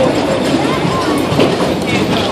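Bumper cars running on the ride floor: a steady rumbling clatter, with voices mixed in.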